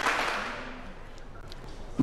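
A pause in a man's speech: a haze of background noise that fades away over the first second, with a few faint ticks near the end.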